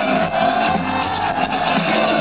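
Live hip-hop band music with bass and percussion, a long held note running over the beat and stopping near the end.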